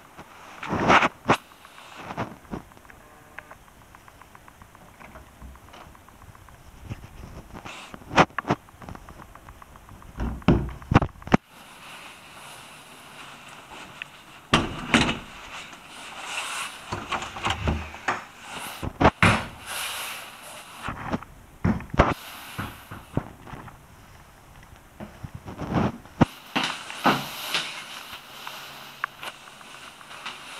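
Irregular knocks, thuds and rustling from a camera being handled and carried through the rooms of a house, with a few sharper bangs in clusters.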